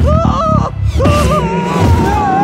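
A man's strained, distorted cry that starts twice and then draws out into a long wobbling wail near the end, over film music with a low rumble underneath.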